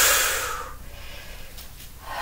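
A woman's loud, hissing breath that fades out within the first second, then only faint room noise.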